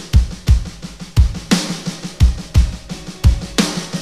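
A hard-rock drum kit playing a steady beat on its own: bass drum and snare, with a crash cymbal about every two seconds. Held instrument notes come in faintly under the drums near the end.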